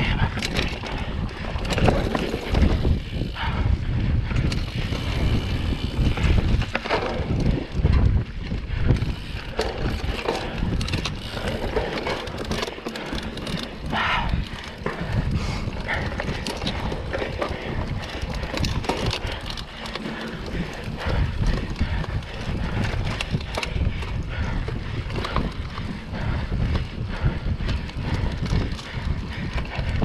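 Mountain bike ridden hard over dirt singletrack: tyres rolling on dirt, with the chain and frame rattling and knocking over bumps and roots, and wind on the microphone.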